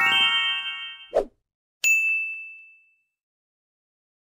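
Subscribe-button animation sound effects: a run of chiming tones stepping upward, a short click about a second in, then a single bright bell ding that fades out over about a second.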